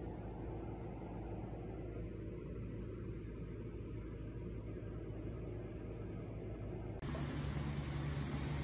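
Steady low hum and hiss of workshop background noise, with no distinct events. About seven seconds in it changes abruptly to a louder, deeper hum.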